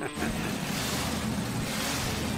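Supercharged V8 hot-rod engine of a 1934 Ford coupe running steadily and very loud through open side exhaust headers, on its first run after the rebuild.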